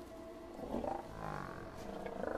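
A long-necked sauropod dinosaur calling: one low, pitched call that starts about two-thirds of a second in, bends up and down in pitch, and lasts about a second.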